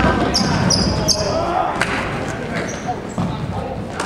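Basketball game in a gym: sneakers squeak sharply on the hardwood court, several times in the first second or so and once more later, while the ball bounces and voices carry through the hall.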